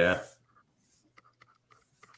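A short spoken "yeah", then faint scattered ticks and rustles of a hand sliding a sheet of drawing paper across a desk.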